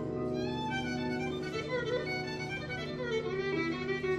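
Violin playing an ornamented melody with quick running passages over held lower notes.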